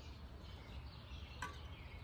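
Quiet outdoor background noise, with one faint short click about one and a half seconds in.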